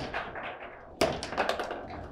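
Foosball table in play: hard knocks and clacks of the ball struck by the plastic players and of the metal rods jolting. A sharp knock at the start, a louder one about a second in, then a quick run of clacks.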